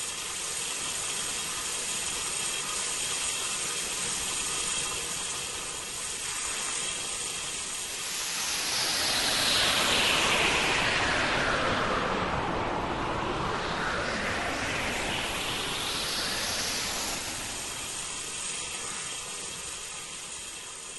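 Novation UltraNova synthesizer noise sweep: a hiss with a filter that sweeps down from high to middle pitch and back up again, like a jet passing over, loudest at the lowest point, as an ambient intro before the music starts.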